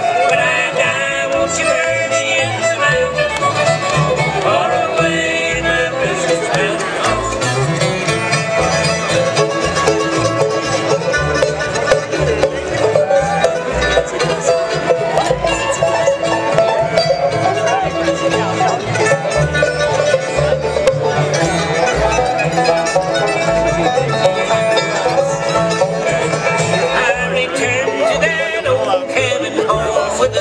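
Live bluegrass band playing an instrumental passage on fiddle, banjo, guitar, mandolin and upright bass.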